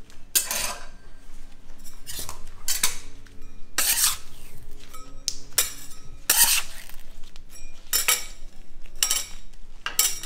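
Metal bench scraper scraping across a stainless-steel candy table, lifting and folding a mass of cooling hot sugar. Eight or so short scrapes come at irregular intervals, roughly one a second, as the half-hardened and still-liquid parts are worked into one even mass.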